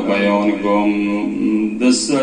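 A man's voice chanting a mournful recitation into a microphone in long, held melodic notes, with a short break near the end.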